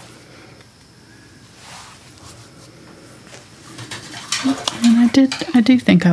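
Faint room noise, then from about four seconds in a paintbrush tapping and swishing through acrylic paint on a palette, with a voice over it near the end.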